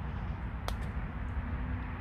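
Steady low rumble of outdoor background noise, with a single short sharp click about two-thirds of a second in.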